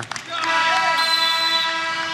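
Arena horn sounding about half a second in and held steadily, marking the end of the first period of a wrestling bout.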